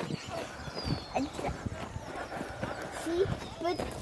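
Footsteps on a wood-chip mulch trail, with brief faint children's voices calling out.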